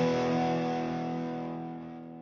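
Distorted electric-guitar chord of a rock jingle, held and ringing out, fading away toward the end.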